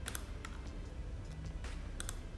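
A few short, sharp clicks from a computer's controls, over a low steady hum.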